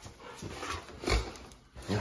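Rottweiler making faint breathing and movement sounds, with a short dull thump about a second in.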